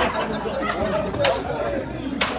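Voices chattering, with one sharp crack of a jiu-jitsu belt lashed across a bare back a little over a second in: a lash of a promotion belt line.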